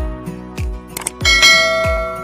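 Channel intro jingle with a steady kick-drum beat, overlaid with subscribe-button sound effects. There are short clicks, then about two-thirds in a bright bell ding, the loudest sound, which rings on.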